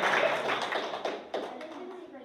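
Applause from a roomful of children fading out over about a second and a half, ending in a few scattered claps.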